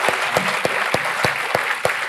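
Audience of schoolchildren applauding, with a steady beat of claps about three times a second running through the general clapping.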